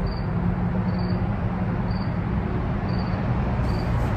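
A single cricket chirping, one short high chirp about every second, over a steady low background hum.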